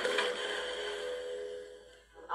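Film soundtrack played through laptop speakers: a sudden hit, then a held tone that slowly fades away.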